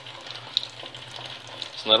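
Tap water running into a stainless steel sink while a sponge with cleaning powder scrubs a small plastic cover, a steady wet rushing with faint scrubbing ticks.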